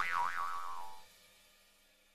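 Cartoon 'boing' comedy sound effect: a springy twanging tone that wobbles up and down twice while sliding lower, dying away within about a second.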